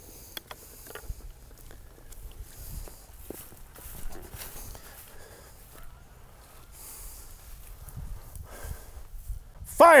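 Quiet open-air ambience with faint footsteps and rustling in dry grass and a few light knocks, as the mortar crew moves into position before firing. A man shouts "Fire!" at the very end.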